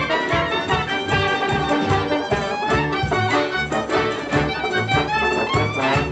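Klezmer band playing a lively dance tune, a violin carrying the melody over a steady bass beat of about two pulses a second.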